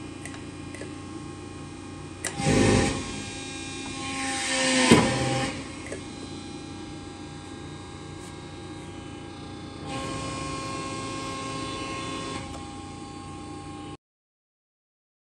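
Cincinnati 60CBII hydraulic press brake running with a steady hum. A short burst of louder machine noise comes about two and a half seconds in, and a rising run of noise around five seconds ends in a sharp clunk. A steadier stretch of motor noise follows from about ten to twelve seconds as the machine cycles and its CNC back gauge repositions.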